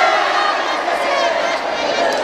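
A large crowd of many voices talking and shouting at once, with some cheering.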